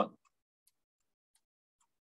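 Near silence with a few faint, scattered clicks of a computer mouse being used to draw on screen.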